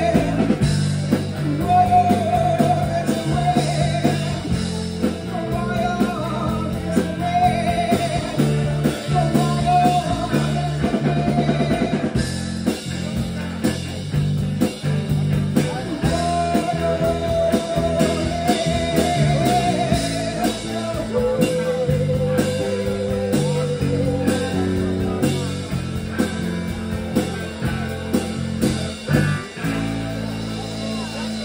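A live rock band playing in a small bar: electric guitars and a drum kit, with a woman singing lead and holding long notes.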